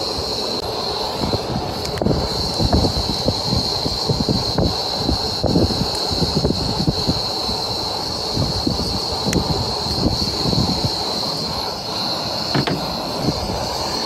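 Portable gas camping stove burner running steadily at full heat under a pot of water, a constant hiss with a steady high whistling tone, with uneven low rumbling beneath it. A few faint clicks.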